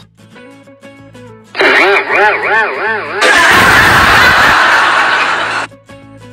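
Added comic sound effects over quiet background music: about a second and a half in, a string of quick rising-and-falling squeals like a cartoon laugh, then a loud rushing noise for about two and a half seconds that cuts off suddenly.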